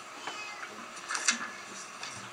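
Paper rustling as a book page is turned, in one short burst about a second in.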